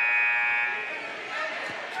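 Gymnasium scoreboard buzzer sounding one steady, even tone that stops about a second in, during a dead ball after a foul call, followed by the low murmur of the crowd in the hall.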